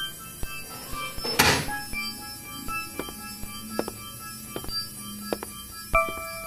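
Sparse experimental electronic soundtrack of scattered clicks, knocks and short high pitched blips, with one loud burst of noise about a second and a half in and a low steady hum underneath through the middle.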